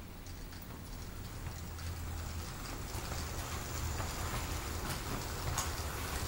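Model freight train headed by two Piko Railion class 189 electric locomotives running along the track. It gives a low hum with a light clicking and rattling of wheels over the rails, growing gradually louder as the locomotives and loaded wagons roll past.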